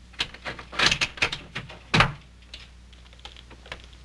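A quick, irregular run of sharp clicks and knocks, the loudest about two seconds in, followed by a few fainter ticks.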